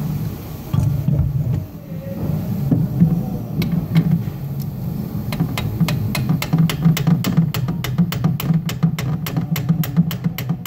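Hammer tapping to drive the Accurate Diesel sleeve down into a Ford 6.0 Powerstroke cylinder head's injector bore: sharp metallic taps start a few seconds in and come quicker toward the end, reaching about three or four a second. A change in the tone of the taps marks the sleeve bottoming out. A steady low hum runs underneath.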